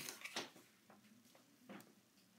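Faint handling of a sheet of cardstock on a paper trimmer: a few brief rustles and taps at the start and one more near the end, otherwise near silence.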